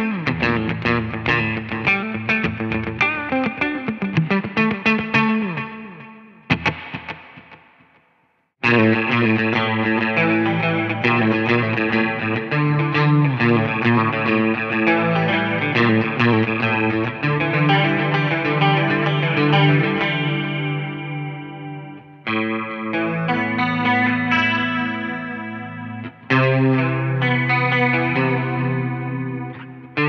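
Distorted Stratocaster-style electric guitar playing phrases through a delay, reverb and chorus multi-effect pedal. Around six seconds in the playing dies away to silence, then a new passage starts, with short breaks near the end.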